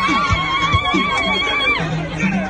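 A long, high, wavering held cry, likely ululation from the dancing crowd, with its pitch falling as it breaks off near the end. Behind it, dance music with steady low drum-like beats about two to three a second.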